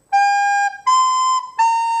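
Soprano recorder playing separate tongued quarter notes, G, then B, then A, each held about half a second with short gaps between, a clear steady whistle-like tone on each note.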